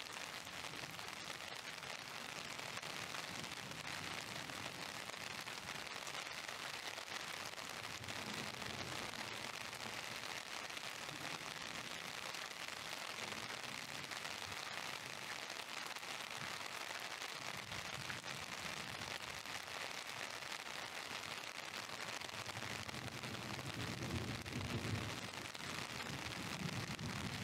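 Heavy downpour falling steadily on a wet street, an even hiss of rain. A low rumble swells near the end.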